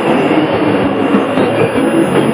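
Shortwave radio receiver tuned to an AM broadcast on 6180 kHz, the programme audio muffled and thin, buried in continuous static and noise.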